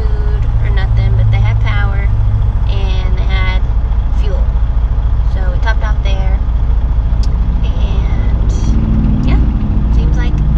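A semi-truck's diesel engine idling with a steady low rumble, heard inside the cab under a woman's talking.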